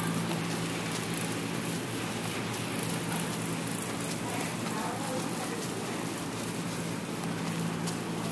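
Steady crackly hiss with a low continuous hum, and under it the soft, muffled hoof falls of a horse trotting on sand arena footing.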